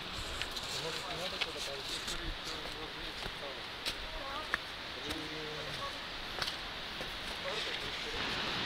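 Footsteps on a forest trail littered with dry leaves, with scattered light crackles and clicks, over a steady outdoor hiss. Faint voices of other hikers come through about a second in and again near the middle.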